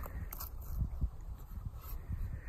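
Faint crunching and rustling of movement on snow-dusted leaf litter, with a few light clicks.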